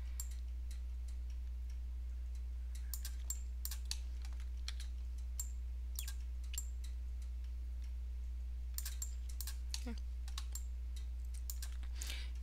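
Irregular clicks of a computer keyboard and mouse, a few at a time with short gaps, over a steady low electrical hum.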